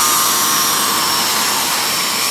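Hoover SpinScrub steam vac carpet cleaner running, its motor drawing air and water up through the hand tool held to fabric: a steady rush of suction with a thin, high whine over it.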